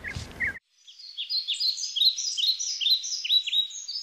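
A bird singing a rapid series of short, high chirps that slide downward, several a second, starting about a second in after a brief drop to silence.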